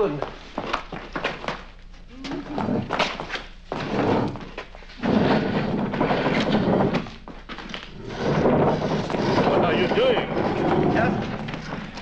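Heavy furniture being shoved and dragged about on a hard floor: a run of knocks and thunks at first, then two long scraping drags.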